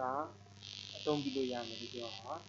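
A steady high buzzing hiss that starts about half a second in and lasts about a second and a half, over a low mains hum and a man's voice talking.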